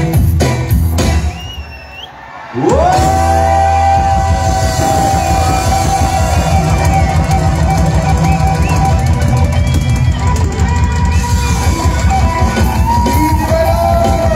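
Live band music, loud: it drops away about a second and a half in, then comes back in with a rising slide into a long held note over a steady, pounding beat.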